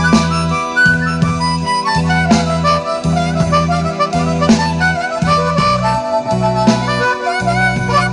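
Blues harmonica played with cupped hands, wavering held notes over a backing track with a repeating bass line and a regular beat played through a portable loudspeaker.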